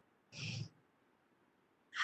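A woman's single short, faint vocal sound about half a second in; the rest is near silence.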